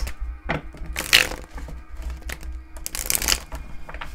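Tarot cards being handled and shuffled: two short papery rustles, one about a second in and one about three seconds in, with small clicks between, over a steady low hum.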